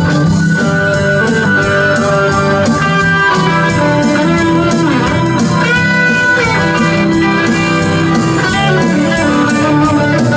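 Live band playing an instrumental passage with no singing, electric guitars to the fore over bass and a steady accompaniment, amplified through PA speakers.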